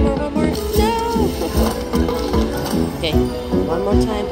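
Huff N' More Puff slot machine playing its game music and reel-spin sound effects during a free spin.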